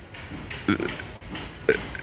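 Two brief, low vocal sounds from a man pausing between phrases, about a second apart, quieter than his speech.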